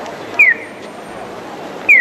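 Pedestrian crossing's audible walk signal: a short electronic bird-like chirp falling in pitch, sounding twice about a second and a half apart, each followed by a fainter chirp, while the light shows green to walk. Steady crowd and street noise underneath.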